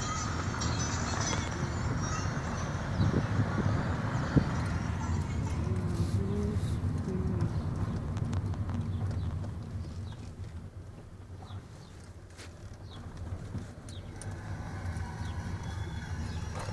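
A car driving, its engine and road noise a steady low rumble heard inside the cabin. Wind hisses through an open window for the first five seconds or so. The whole sound grows quieter for a few seconds about ten seconds in.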